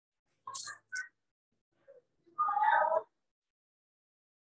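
Two short hissy sounds, then a cat meowing once, loudly, for under a second about two and a half seconds in.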